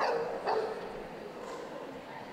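A dog barking twice, about half a second apart, each bark sharp at the start and falling in pitch.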